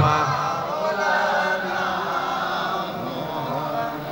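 Soft, wavering male chanting of the salawat, well below the loud amplified chanted note that breaks off right at the start.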